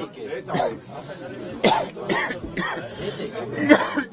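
Several people talking in a crowded room, with a man coughing; the loudest cough comes near the end.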